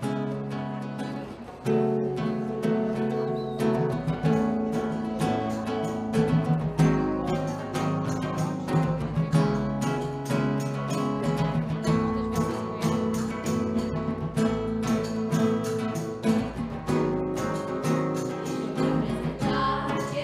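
Live band instrumental introduction: an acoustic guitar strumming chords over snare drum, conga and tambourine playing a steady rhythm, with the percussion coming in about two seconds in. Young female voices start singing near the end.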